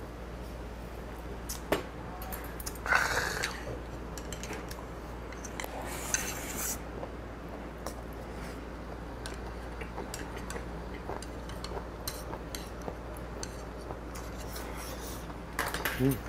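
Light, scattered clicks of metal chopsticks against small ceramic side-dish bowls and plates while eating at a table, with two short, louder noises about three and six seconds in. A low, steady hum runs underneath.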